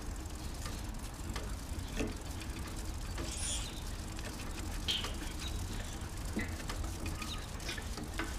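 Footfalls and husky paws patter on an asphalt road under a steady low rumble of wind and movement on the moving camera, with light irregular ticks throughout. A faint high chirp comes about three and a half seconds in.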